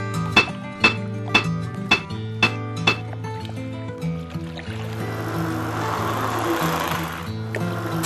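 Sound-designed pile-hammer strikes, about six sharp metallic clanks roughly two a second, laid over background music. A swelling hiss follows and stops abruptly near the end.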